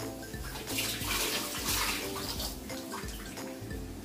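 Water running and splashing for about two seconds, starting just under a second in.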